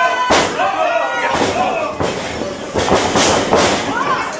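Sharp slaps and thuds of wrestlers' bodies striking each other and the ring mat, several times, the loudest about a quarter second in, with voices shouting over them.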